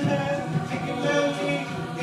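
A cappella group singing sustained, layered vocal harmonies, with a vocal-percussion beat thumping low underneath.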